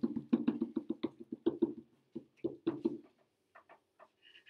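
SMART Board eraser rubbed quickly back and forth over the interactive whiteboard's surface, a run of soft knocks about six a second. The strokes thin out in the second half, ending in a few separate taps.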